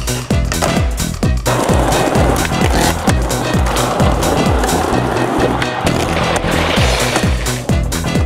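Electronic dance music with a steady, fast kick-drum beat. From about a second and a half in until near the end, a rushing noise of skateboard wheels rolling over paving runs under the music.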